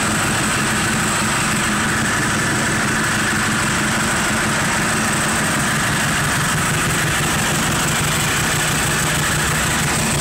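Several Ducati superbike engines idling together at a steady pitch, with no revving, in an enclosed room.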